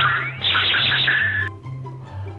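Background music with a steady bass line, overlaid by an edited-in sound effect with wavering pitch that lasts about a second and a half and cuts off abruptly.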